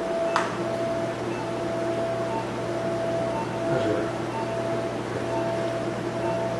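Operating-room equipment: a steady electronic hum and tone, with short electronic beeps repeating at a regular pace, typical of a patient monitor. There is a single sharp click about half a second in.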